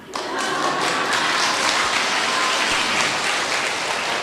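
Audience applause in a hall: many hands clapping at once. It begins abruptly and holds steady.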